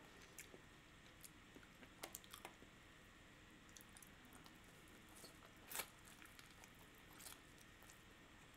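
Faint chewing and soft mouth sounds from eating a chili-oil-dipped steamed bun, with a few small clicks; the clearest one comes a little before six seconds in.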